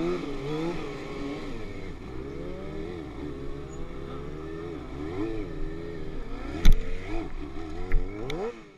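Sportbike engine being worked on the throttle during stunt riding, its pitch rising and falling in repeated swells. A sharp knock about two-thirds of the way in is the loudest sound, with a smaller click near the end.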